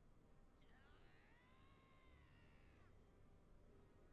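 Near silence: room tone, with one faint, high, drawn-out call with overtones that starts about half a second in, rises and then falls in pitch, and lasts about two seconds.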